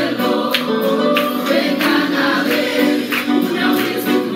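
A small mixed group of singers, one man and three women, singing a gospel hymn together through handheld microphones, several voices holding long notes at once.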